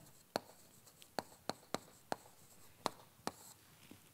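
Chalk writing on a chalkboard: about eight short, sharp taps as the chalk strikes the board stroke by stroke while a word is written.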